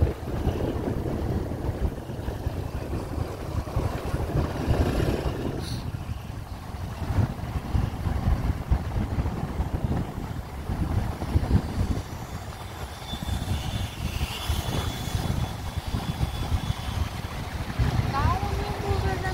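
Motorcycle ride heard from the bike: gusty wind rumble on the microphone over the motorcycle's engine and road noise.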